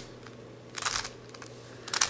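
Plastic layers of a 5-layer hexagonal dipyramid twisty puzzle being turned by hand: a short burst of clicking about a second in, and a faint click near the end.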